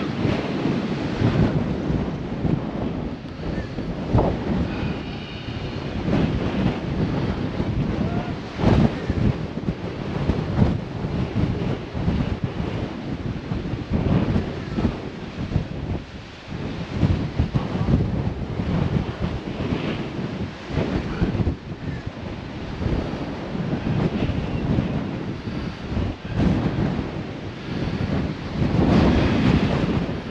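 Strong, gusty wind buffeting the microphone: a loud rush that surges and drops with each gust.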